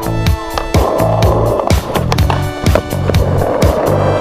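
Skateboard wheels rolling over concrete, a steady rumbling hiss that starts about a second in, under electronic dance music with a steady drum beat.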